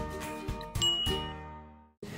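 Intro background music with a bright, bell-like ding sound effect about a second in, as a subscribe button is clicked on screen. The music then fades out to silence just before the end.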